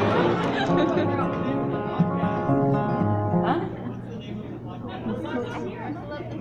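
Steel-string acoustic guitar being played, several notes ringing together for about three seconds before dying down.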